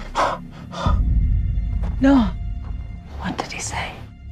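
Film-trailer soundtrack: tense background music with short breaths or whispered voice sounds, and a brief falling vocal sound about two seconds in.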